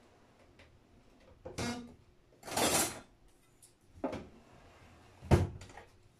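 Kitchen handling sounds at a wooden worktop: a rustle, a longer brushing scrape, then two knocks, the second, a little after five seconds in, the sharpest and loudest.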